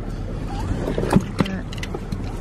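Steady low hum of a car heard from inside the cabin, with a few sharp clicks about a second in and near the end.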